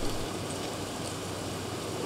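Steady, even hiss of background noise with a faint low hum under it, unchanging through the pause between spoken lines.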